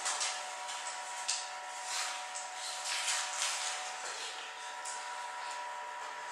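Room tone in a pause of speech: a steady faint hum over hiss, with a few soft rustles.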